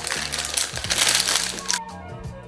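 Brown paper takeout bag crinkling and rustling as it is handled and opened to pull out a soft taco; the crackling stops sharply near the end, over quiet background music.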